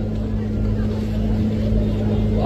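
A steady low hum with a faint noisy background, engine-like in character.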